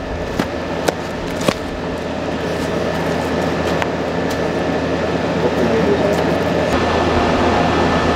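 Steady mechanical hum and rushing noise of an outdoor air-conditioning condenser unit, growing slightly louder, with a few faint clicks in the first few seconds.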